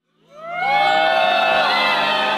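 A large concert crowd cheering and screaming, fading in from silence in the first half second and staying loud and steady.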